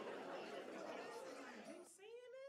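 Faint babble of many voices talking over one another, with no single voice standing out; the mix changes abruptly near the end.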